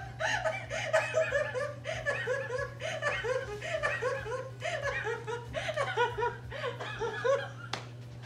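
A woman laughing hard and without a break, in quick repeated bursts of laughter.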